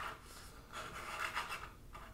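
A faint, soft scraping as an action figure's display base is slid and turned around by hand on a tabletop.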